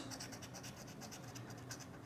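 Scratch-off lottery ticket being scraped, its coating rubbed away in quick, faint, repeated strokes, several a second.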